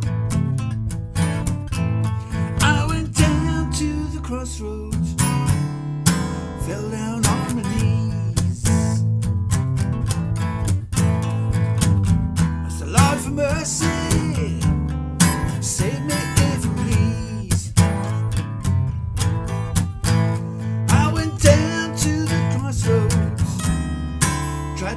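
Acoustic guitar playing a blues accompaniment, strummed and picked in a steady rhythm.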